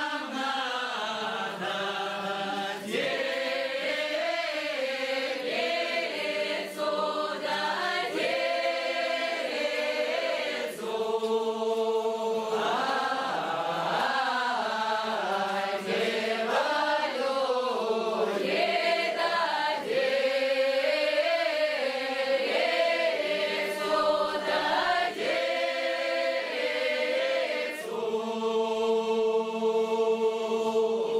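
A mixed group of men's and women's voices singing an unaccompanied Upper Don Cossack round-dance (khorovod) song, in long drawn-out phrases with several held notes.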